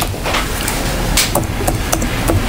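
A few sharp taps or knocks over a steady hiss of room noise, picked up by the meeting microphones.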